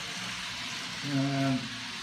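N gauge model trains running on the track, a steady rushing hiss of wheels and small motors. About a second in, a man's held hesitation sound, like an "um", lasting about half a second.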